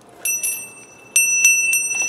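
A small brass hand bell is rung: one light ring near the start, then three quick rings about a second in, with a clear high tone that rings on.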